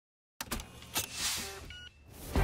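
Silence, then a few sharp clicks and a falling whoosh, starting suddenly about half a second in and fading near the end: an edited transition sound effect.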